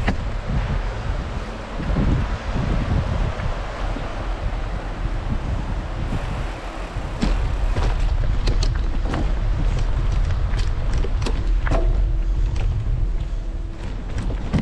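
Mountain bike rolling over a wooden plank bridge and then a gravel and leaf-covered trail: tyre noise with scattered knocks and rattles from the bike, and wind rumbling on the microphone.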